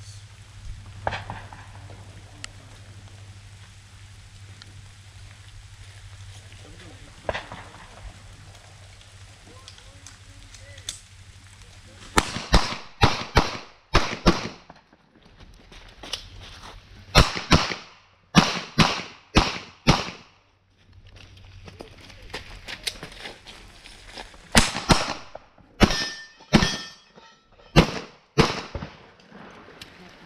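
Semi-automatic pistol shots in a practical-shooting stage. A few single shots come in the first dozen seconds; then, from about twelve seconds in, the pistol fires in rapid strings a few tenths of a second apart, with short pauses between strings.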